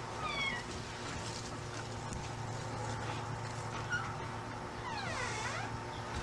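A door's hinges squeaking as it swings open and then shut: a short high gliding squeak just after the start and a longer one falling and rising again about five seconds in, over a steady low hum.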